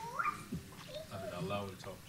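Faint, indistinct voices, a student speaking quietly away from the microphone, with a short rising vocal sound at the start.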